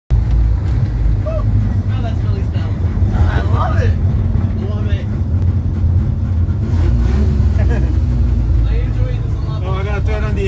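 Barkas B1000 van's engine running while the van is driven, heard from inside the cab as a steady low rumble.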